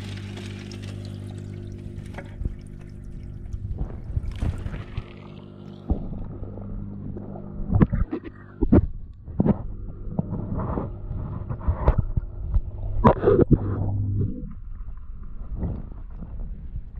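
Aquarium pump humming steadily, with water splashing and gurgling from the filter outlet. Handling knocks against the camera's housing come from about 6 s in, and the hum cuts off suddenly near the end.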